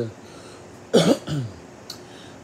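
A person coughs once, a sharp cough about a second in, followed by a short voiced tail.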